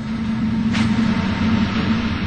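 Loud, distorted rock music: a heavy guitar chord held under a steady beat, with a cymbal crash about three-quarters of a second in.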